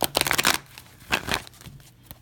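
Tarot cards being riffle-shuffled by hand on a table: a quick burst of rapid card-edge flutter, then a second shorter burst about a second in.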